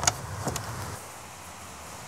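Latch of a wooden door clicking as the door is opened: a sharp click, then a fainter second click about half a second later.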